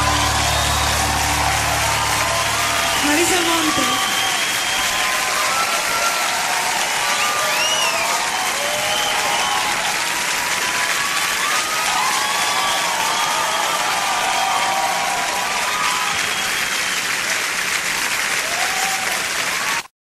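Live concert audience clapping and cheering, with many shouting voices over steady applause, as the song's final chord dies away in the first few seconds. The applause cuts off abruptly at the very end.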